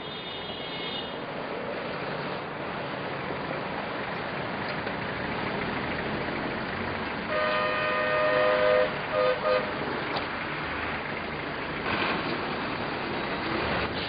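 A vehicle horn over steady street noise. One long blast comes about seven seconds in, followed by two short toots. A fainter, higher horn sounds briefly at the start.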